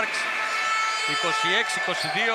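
A male sports commentator speaking over steady arena background noise, his voice coming back about a second in.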